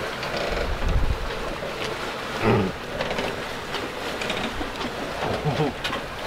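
Steady rumble and hiss of wind and water on a sailboat under way, with a short grunt about two and a half seconds in and a few more small grunts near the end.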